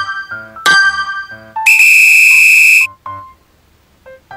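Quiz countdown-timer sound effect: electronic keyboard notes with a struck chord about once a second, then a loud, steady buzzer from about a second and a half in, lasting about a second, marking time up. A short note follows, then it goes quiet near the end.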